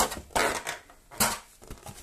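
Handling noise from a plastic insert tray and cardboard box: rustling and scraping as the tray is lifted out of the box, with a short sharp knock about a second in.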